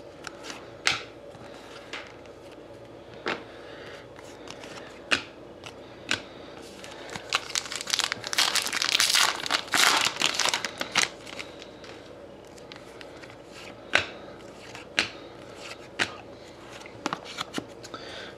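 Trading cards being handled on a table, with scattered light clicks and taps. In the middle, a foil pack wrapper crinkles for a few seconds.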